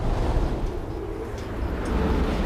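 A low, rumbling, wind-like noise with no clear tune, starting abruptly and staying fairly loud.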